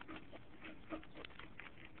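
A spoon scraping the scales off a bluegill laid on newspaper: a run of short, faint, irregular scrapes.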